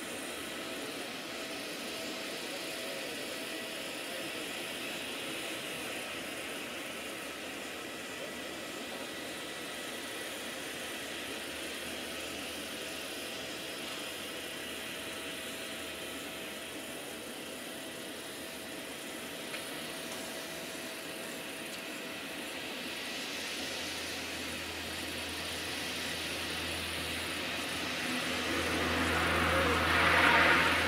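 The C-130 Hercules' four Allison T56 turboprop engines running at takeoff power during the takeoff roll, heard from a distance as a steady drone. Over the last several seconds it grows louder and a deeper hum comes in as the aircraft draws nearer.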